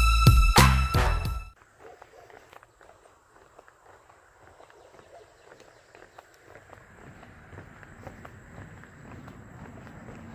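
Background music with sustained string-like tones cuts off suddenly about a second and a half in. After it come faint, irregular footsteps of a hiker walking along a wooden boardwalk, under a thin steady high tone.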